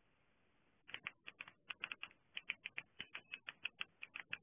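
Keys or buttons being pressed in quick succession: a run of small, sharp clicks, about six a second, starting about a second in, typical of entering entries one after another.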